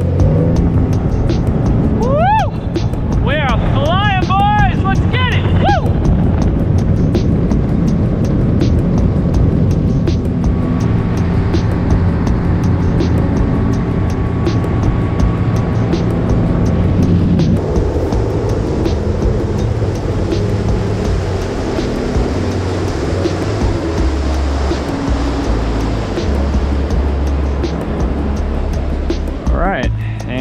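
A boat's motor running under throttle as the boat speeds across open water, with background music over it and a brief voice-like sound that rises and falls a few seconds in.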